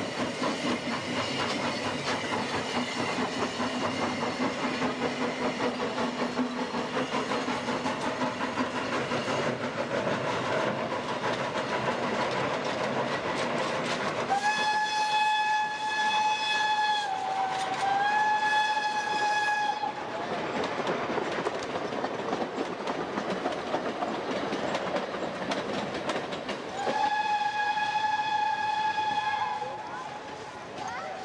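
Narrow-gauge steam locomotives SKGLB No. 4 and Mh.6 working a train, with fast, steady chuffing exhaust beats. About halfway through, a steam whistle gives a long blast whose pitch dips briefly in the middle, and it blows again near the end.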